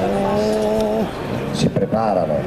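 An amplified voice over the stage PA holding one long, steady note for about a second, then breaking into shorter rising and falling calls near the end.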